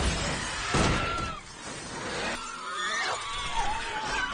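Film sound effects: a sudden crash right at the start and a second, louder crash about three-quarters of a second in, followed by thin, wavering high whining tones.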